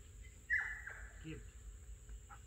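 Steady high-pitched drone of insects, with one short, sharp squeal about half a second in.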